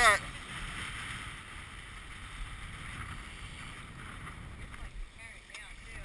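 Steady wind and water noise on a small open boat, with a low rumble of wind on the microphone.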